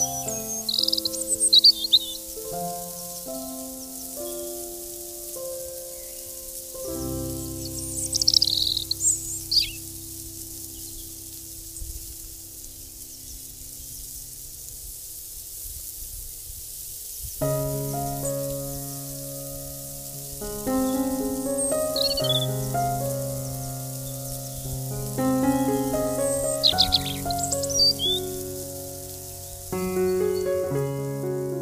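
Instrumental background music of held melodic notes that pauses for several seconds mid-way, with short bursts of bird chirps breaking in four times.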